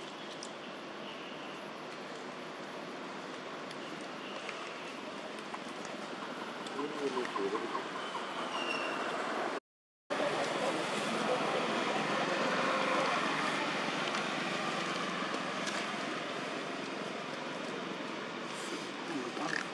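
Steady outdoor background noise with a faint murmur of distant voices. It cuts out to silence for about half a second near the middle, then resumes a little louder.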